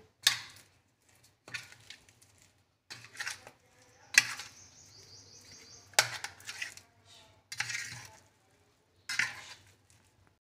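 Hands mixing mashed boiled taro with spices on a brass plate: irregular scrapes and knocks of fingers and plate on the metal, roughly one every second.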